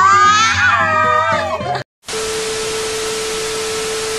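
A high, drawn-out voice wavering in pitch over background music, cut off abruptly just under two seconds in. After a moment of silence, a steady TV-static hiss with a single held test-tone beep, a glitch transition effect.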